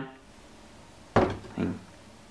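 A single knock about halfway through, a glass jar being put down on a hard surface, followed closely by a brief, softer vocal sound.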